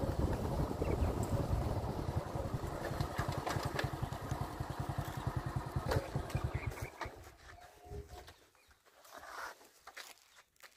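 Motorcycle engine running at low road speed with a low, even pulsing, then fading out about seven seconds in as the ride comes to a stop.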